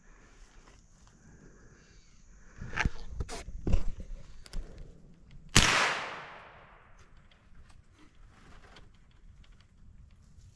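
A few thumps and rustles close to the microphone as the long gun is handled, then about five and a half seconds in a single gunshot: a sharp crack that fades away over about a second and a half.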